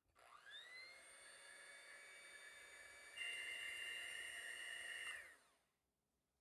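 Electric hand mixer running with its wire beaters in a glass bowl of egg whites and sugar, whipping meringue: the motor whirs up to speed at the start, runs steadily, grows louder about three seconds in, then is switched off and winds down near the end.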